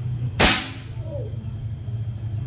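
A PCP air rifle fired once, about half a second in: a sharp pop of released air that trails off within about half a second.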